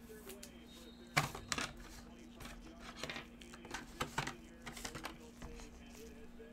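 Blue nitrile-gloved hands handling a trading card and plastic card holder: a string of sharp clicks, taps and rustles, the loudest about a second in.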